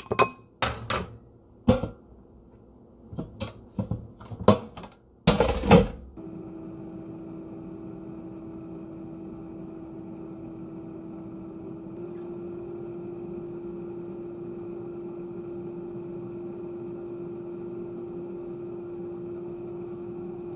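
Knocks and clatters of a glass food-storage container's lid coming off and kitchenware being handled, the loudest just before the machine starts. Then an air fryer runs with a steady fan hum, its tone shifting slightly higher about halfway through.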